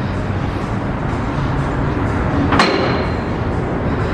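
Two-post car lift's hydraulic pump motor running with a steady hum as the lift raises the car. About two and a half seconds in comes a single sharp metallic clank with a brief ring.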